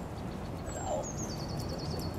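A small songbird singing: a thin high whistle that slides downward and breaks into a rapid trill, starting a little under a second in, over a steady low outdoor rumble.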